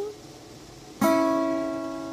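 A gap between sung lines, then about a second in a guitar chord is strummed once and rings on, slowly fading.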